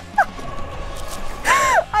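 A woman laughing hard: a short high squeal of laughter just after the start, then one longer high-pitched squeal near the end.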